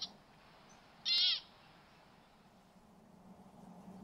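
American pika calling once, about a second in: a single high, squeaky call lasting under half a second.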